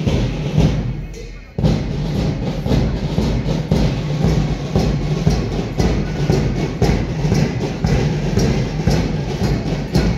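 School marching band of bass drums and snare drums beating a steady marching rhythm, about two strokes a second, louder from about a second and a half in.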